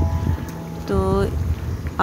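Potato tikkis shallow-frying in hot oil in a non-stick frying pan, the oil bubbling and sizzling, over a steady low rumble.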